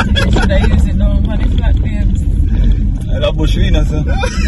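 Steady low rumble of a car's engine and tyres heard from inside the moving cabin, under people talking.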